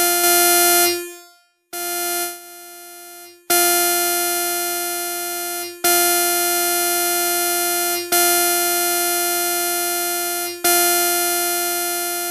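Yamaha Reface DX four-operator FM synthesizer playing a bright, metallic, guitar-like patch. About six notes are struck one after another, each about two seconds long, with a sharp attack, a slow fade while held and a quick release. The carrier's amp envelope rates are being adjusted between notes.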